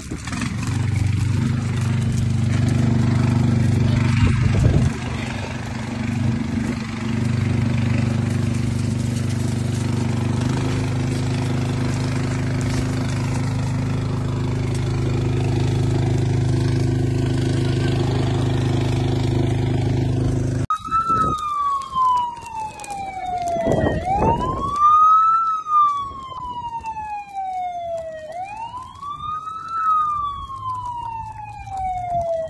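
A heavy engine runs steadily at one speed for most of the time. About two-thirds of the way in it cuts off abruptly and an emergency-vehicle siren starts wailing, its pitch sliding slowly down over about three seconds, then sweeping quickly back up, over and over.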